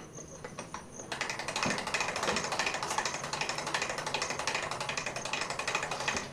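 Casket-lowering device over a grave clattering as it runs, a fast, dense ratcheting rattle of clicks that starts about a second in and cuts off suddenly: the coffin being lowered into the grave.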